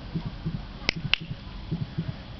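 Two sharp clicks about a quarter second apart, like snaps made to catch a dog's attention while it is held in a show stack. Faint low thuds run underneath.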